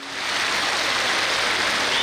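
Applause from a large crowd: a dense, steady clapping after a song has ended.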